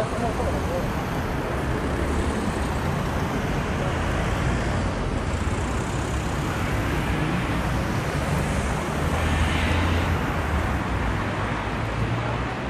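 Urban road traffic: car engines running in slow traffic and vehicles driving past, with a louder pass about nine to ten seconds in.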